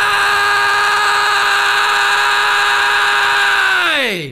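The final held note of a stoner rock song: one steady, sustained tone rich in overtones, which slides sharply down in pitch near the end and dies away into silence.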